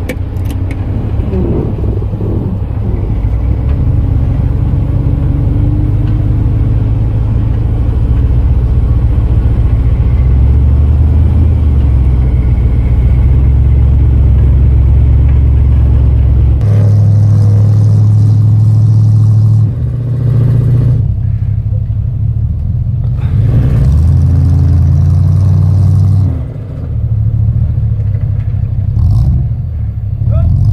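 Off-road truck engine heard from inside the cab, working under load through deep snow on a tow strap behind a Jeep. Its low drone holds steady at first, then steps up and down in pitch several times in the second half as the revs change.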